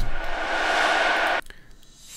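A white-noise transition sample from a future bass sample pack, auditioned in the DAW browser. It is a bright hiss-like swell that cuts off suddenly after about a second and a half when the preview is stopped.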